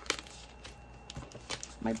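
A cash-envelope wallet is handled and set on a glass desktop. There is a sharp hard tap just after the start, then a few lighter clicks and rustles.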